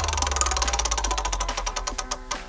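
Spinning prize-wheel sound effect: rapid, evenly spaced clicking ticks that gradually slow down, over a low steady hum.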